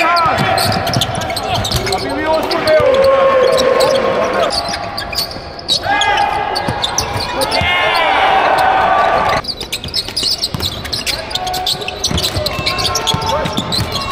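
Sounds of a basketball game in play: the ball bouncing on the court, with players and coaches shouting over a busy arena background.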